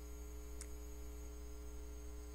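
Steady low electrical mains hum with a row of buzzy overtones, from the recording's microphone chain, with a faint single click about half a second in.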